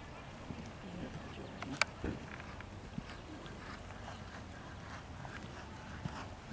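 A horse's hoofbeats at the canter on dirt arena footing. A single sharp click about two seconds in is the loudest sound.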